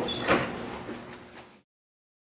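Lecture-room background noise with a single short knock about a third of a second in, fading out to silence after about a second and a half.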